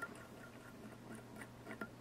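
Faint, light, irregular ticks, several a second, from a bobbin holder and thread being wound around a small fly hook held in the fingers.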